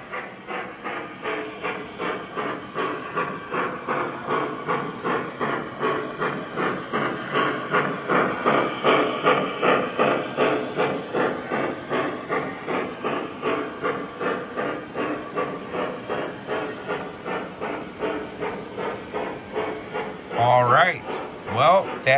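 K-Line O-gauge Pennsylvania K4 model steam locomotive running with its electronic steam chuff, a steady rhythm of about three to four chuffs a second over the rolling of the train on the track. It grows louder toward the middle as the train passes close.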